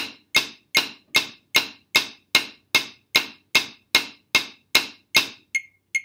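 Wooden drumsticks striking a practice pad in even single strokes, about two and a half a second, each landing on a metronome click at 150 bpm. The strokes stop about five seconds in, and the metronome's thin, ringing click carries on alone at the same pace.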